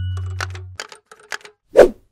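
Logo sting sound effects: a low held music note fades out, a quick run of light typewriter-like clicks follows, and one short loud hit comes near the end.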